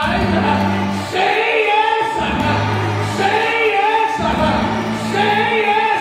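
Gospel singing by a church choir over held low bass notes that change every second or so.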